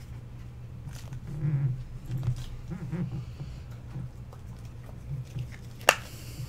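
Baseball cards and a torn wax-pack wrapper being handled on a desk mat: faint rustles and a few soft low thuds over a steady low hum, with one sharp tap just before the end.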